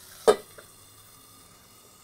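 A stainless steel bowl set down on a cast-iron griddle plate: one sharp metal clank about a third of a second in, followed by a faint ringing from the bowl that dies away.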